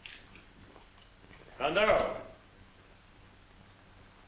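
A single short vocal cry or exclamation, under a second long, about halfway through, over faint soundtrack hiss.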